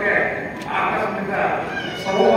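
Only speech: a man speaking at a podium microphone, his voice carried over the hall's sound system.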